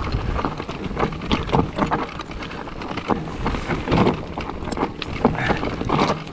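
Mountain bike rolling down a loose rocky trail: the tyres crunch over stones and the bike gives off an irregular clatter of knocks and rattles, over a low rumble of wind on the microphone.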